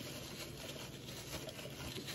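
Faint rubbing of a paper tissue wiped over the nonstick plate of a cake pop maker, spreading cooking spray evenly, over a low steady hum.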